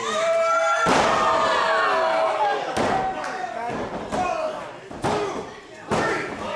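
A heavy slam on a wrestling ring about a second in, as a wrestler lands from the top rope onto an opponent and the canvas, followed by two more thuds. Voices shout and yell throughout.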